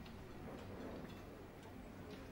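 Faint ticking, soft regular ticks over quiet room tone.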